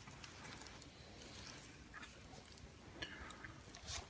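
Near silence: quiet room tone with a few faint, short clicks.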